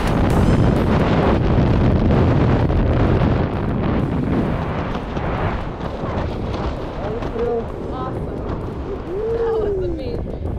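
Freefall wind blasting across the camera microphone, a loud, steady rush that eases slightly after about six seconds. Near the end a voice calls out in short rising-and-falling cries.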